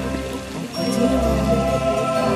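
Show music played over loudspeakers for a fountain show, with the hiss and splash of water jets spraying and falling back onto the lake. The music dips briefly about half a second in, then swells back.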